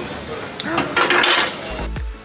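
Busy street-market ambience with a brief voice and a loud noisy burst about a second in; near the end, background music with a heavy bass beat starts.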